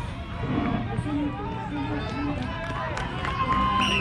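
Indistinct voices of several people talking around a running track, over a low steady rumble.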